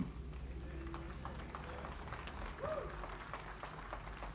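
A quiet pause: faint room noise in a large hall, with a few faint, brief voice sounds.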